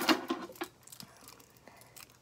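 A few faint, scattered clicks from a lanyard's small metal clasp being handled in the fingers.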